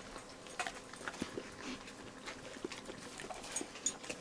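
Pit bull licking and smacking its mouth on a mouthful of peanut butter: a run of irregular short smacks and clicks.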